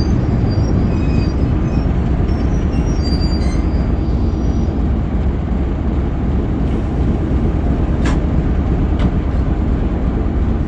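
Heritage train running along the line, heard close up from on board: a loud, steady rumble of wheels and running gear on the rails. Faint high squeals come through in the first few seconds, and there is a single sharp click about eight seconds in.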